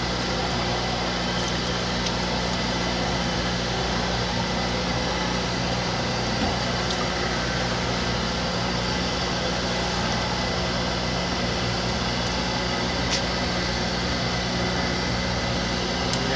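Steady electric motor hum with a constant machine drone, from the drive motor of a magnetic roller separator running, with a few faint ticks.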